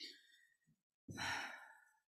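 A man's sigh close to the microphone: a soft breath at the start, then a long breath out about a second in that fades away.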